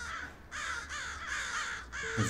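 A flock of crows cawing, many harsh calls overlapping one another, with a short lull about half a second in.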